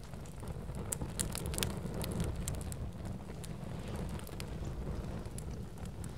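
Steady low wind rumble buffeting the microphone, with faint scattered crackles and ticks over it.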